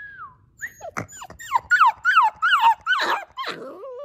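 Yellow Labrador puppy whining: one drawn-out falling whine, then a quick run of about eight high, falling whines, roughly three a second.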